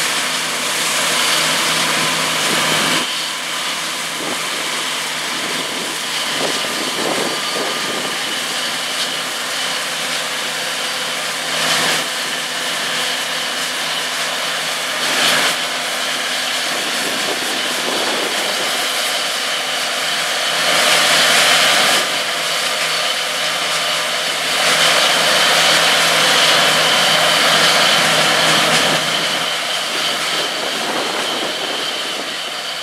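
John Deere S690 combine harvester running at work in canola: a steady engine hum under the whir and hiss of its threshing and chaff-spreading machinery. It grows louder for a couple of stretches in the second half.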